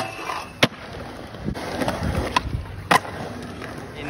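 Skateboard wheels rolling on concrete, with a few sharp clacks of the board landing or striking a rail or ledge.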